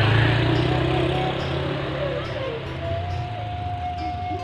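Motor scooter passing close by and riding away, its engine loudest at the start and fading steadily. Background music with a held flute-like tone comes in about three seconds in.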